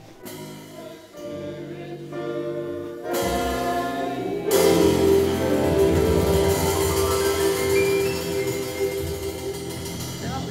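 Children's choir singing with a jazz trio of piano, upright bass and drums. The music grows louder about three seconds in and swells again at about four and a half seconds into a long held chord.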